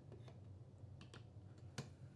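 Near silence with a few faint, light clicks, the loudest near the end: a steel golf shaft with its club head being set onto a swing weight scale's beam and handled against it.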